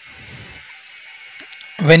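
Low, steady background hiss during a pause in a man's talk, with one faint click about a second and a half in; the man starts speaking again just before the end.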